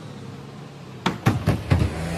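A low, steady engine hum, then four quick knocks or thuds in a row about a second in.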